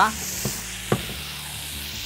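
Steady sizzling of meat cooking over high heat, with a short knock about a second in as a grilled steak is laid on a plastic cutting board.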